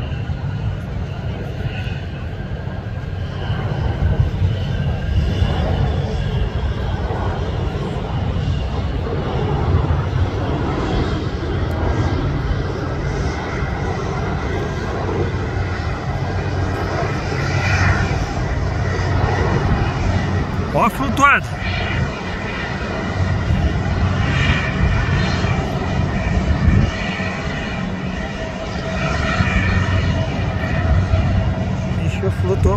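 Jet aircraft engine noise carrying across the airfield as a steady low rumble, with faint voices or radio chatter over it. A single sharp knock comes about two-thirds of the way through.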